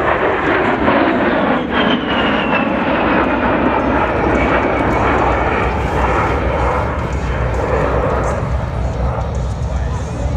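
An A-10 Thunderbolt II's two General Electric TF34 turbofan engines passing by low and loud: a steady jet roar with a high whine that falls in pitch over the first few seconds as the aircraft goes past. A deeper rumble grows near the end.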